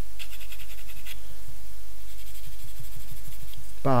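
Fine-grade sanding stick rubbed quickly back and forth on a plastic model kit part, smoothing down a sprue nub. It comes in two short spells of quick, light scratching strokes, the first about a second long and the second from about two seconds in.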